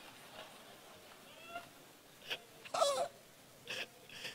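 A quiet pause with faint room tone, broken by a few brief vocal sounds from a person. The loudest is a short high voiced sound, like a stifled laugh, a little before the end of the third second, followed by a breath.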